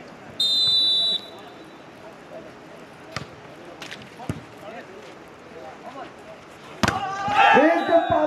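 A referee's whistle blows once near the start, a single high steady blast of under a second. Then come a few sharp slaps of hands on a volleyball during the rally, the loudest a hard hit about seven seconds in, followed at once by shouting voices.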